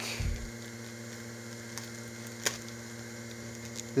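A steady low electrical hum, with a soft thump just after the start and a few faint ticks as a plastic mask bag is handled.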